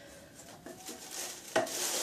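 Rustling and small knocks of packaging and product containers being handled and rummaged through, growing louder toward the end.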